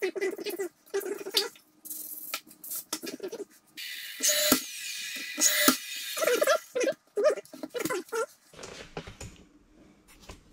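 Cordless brad nailer firing twice into shoe molding at a cabinet base: two sharp snaps about a second apart, near the middle, over a high whirring hiss from the tool.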